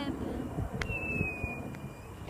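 A dog whining: one thin, high, steady note starting about a second in and falling slightly in pitch.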